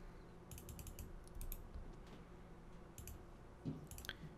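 Faint clicking of a computer mouse and keyboard: a quick run of clicks about half a second in, a few more around a second and a half, and single clicks near three seconds and near the end.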